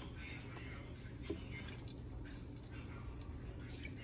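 Faint drips and squishes as a mandarin is squeezed by hand, its juice falling into an empty blender jar.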